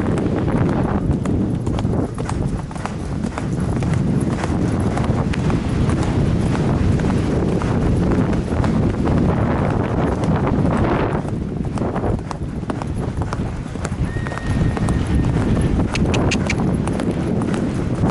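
Hoofbeats of a horse galloping across grass on a cross-country course, heard from the rider's helmet, in a quick steady rhythm over a rumble of wind on the microphone.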